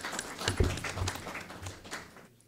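Audience applauding, the clapping dying away near the end, with a couple of low thumps about half a second and a second in.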